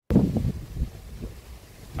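Wind buffeting the microphone: a loud gust just after the start, then lower and uneven.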